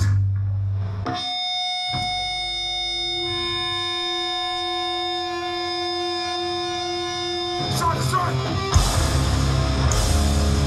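Electric guitar holding one steady ringing note or chord through effects for several seconds. About eight seconds in, the full hardcore punk band crashes in with distorted guitars, bass and drums.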